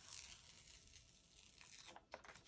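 Near silence, with faint rustling of a paper sticker sheet being handled, strongest just after the start.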